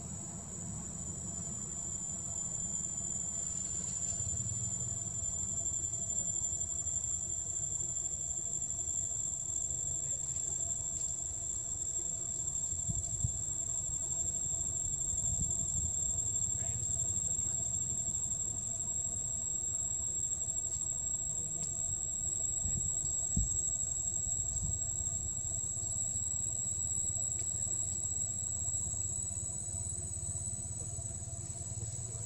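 Insects droning steadily in one high, unbroken tone, with a fainter lower tone alongside it, over a low rumble with a couple of soft knocks.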